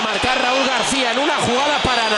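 Men talking over a steady stadium crowd noise.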